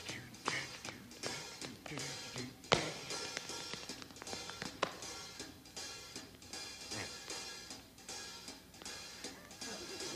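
Band music with drums played softly under scattered sharp taps of dance shoes on a stage floor as steps are danced.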